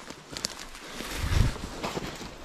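Footsteps through forest undergrowth: a few sharp snaps and a low thud about two-thirds of the way through, with no voices.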